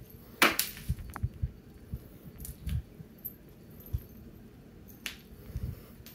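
A cat pouncing on and batting a toy across a tile floor: scattered soft thumps and scuffs of paws and body, with one louder, sharp rustle about half a second in.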